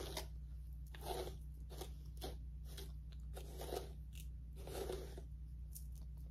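A small plastic hairbrush pulled again and again through long curly wig hair: short scratchy swishing strokes, roughly two a second.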